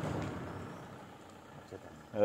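A car driving past on the road, its tyre and engine noise fading steadily as it moves away.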